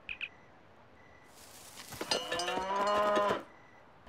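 Cow mooing: one long moo of about two seconds that swells up just over a second in.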